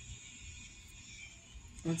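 Quiet room tone with a faint low hum, and a man's voice starting right at the end.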